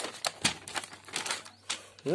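Pen writing on a sheet of paper: a quick series of short scratchy strokes and taps, about five a second.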